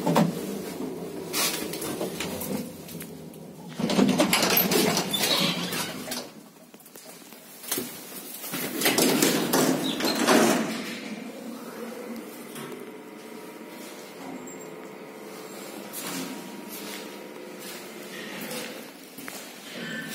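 Automatic sliding doors of an old 1975 KMZ passenger lift clattering open and shut in several loud bursts, followed by a fainter, steady hum with several tones.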